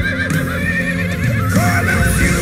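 Horses whinnying over background music: one long quavering whinny, then a second beginning near the end.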